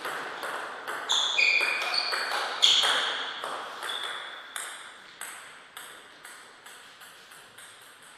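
Table tennis rally: the ball clicks sharply off the rubber paddles and the table, each hit with a short high ring. Past the middle the clicks come evenly, about two a second, and grow steadily fainter as the ball bounces on the floor once the point is over.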